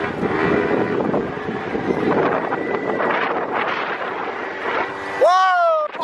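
Wind rushing over the microphone and rolling noise while riding fast along a street, then a loud drawn-out yell that rises and falls in pitch near the end.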